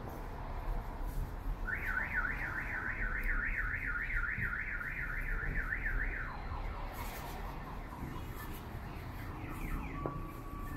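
A vehicle alarm siren warbling rapidly up and down, about three times a second, for about four seconds, then shifting to a lower, falling pattern and fading. A steady low street rumble runs underneath.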